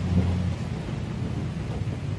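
Low, steady rumble with a faint hiss: indoor room background noise, no distinct event.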